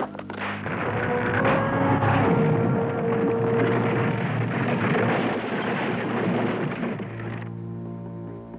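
Dramatic film score with a long, loud rumbling crash of noise over it, which cuts off suddenly shortly before the end, leaving the music's held chords.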